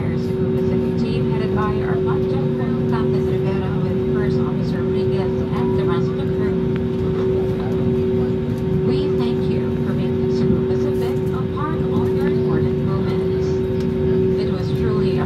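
Jet airliner engines heard from inside the cabin while taxiing: a steady hum with a strong held tone. Voices of people talking come and go in the background.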